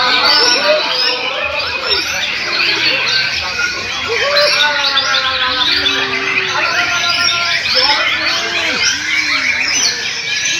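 Dense, overlapping song of many caged songbirds at once: a chorus of whistles, warbles and chirps that never pauses, with white-rumped shama (murai batu) phrases among it. Voices murmur underneath.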